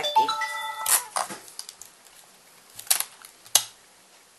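A brief chime of several held notes coming in one after another, lasting under a second, then a few sharp clicks and faint handling noise as a twisted silk cord is handled.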